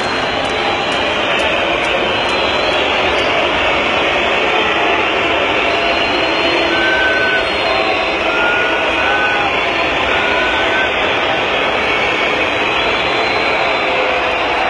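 Large arena crowd making a steady, dense roar at an even level, with a few faint short high tones near the middle.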